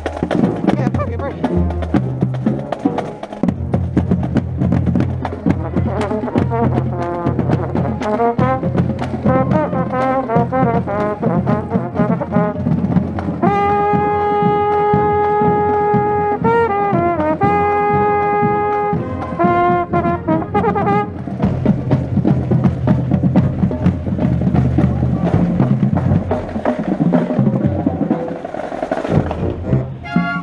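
Marching band brass playing: sousaphones on a low bass line under higher brass, with a mellophone right at the microphone holding long notes from about 13 to 19 seconds in, one of them bending down and back up.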